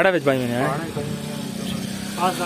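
A small engine running steadily: a low, even hum that sets in just after a short burst of a man's speech.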